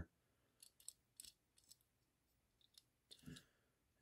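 Near silence: room tone with a few faint, scattered clicks and a soft sound just after three seconds in.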